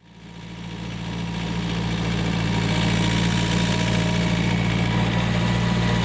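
Vehicle engine running steadily at an even, low pitch, fading in over the first second or two.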